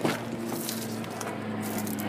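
A car's rear door latch clicks once as the door is opened, followed by a steady low hum.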